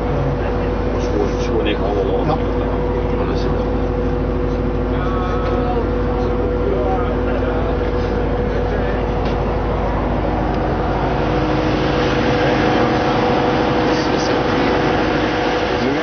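Steady machinery hum with several held tones and a low rumble inside the cabin of a mobile customs X-ray scanner truck. A hiss grows in over the last few seconds.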